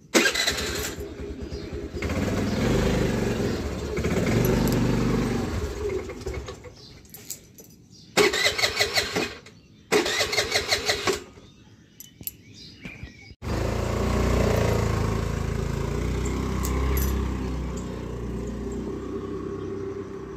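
Honda Activa scooter's single-cylinder engine starting with a sudden loud onset and running as it pulls away. Two loud bursts of fast rattling come about eight and ten seconds in. After a sudden cut, an engine runs steadily with a low drone.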